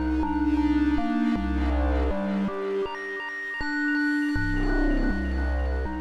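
Korg Minilogue analogue polyphonic synthesizer playing its "Genii" lo-fi patch: deep bass notes changing about once a second under a held tone, with mallet-like notes that ring and fade above them.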